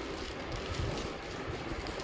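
Plastic packaging rustling and crinkling as it is handled, with soft low bumps.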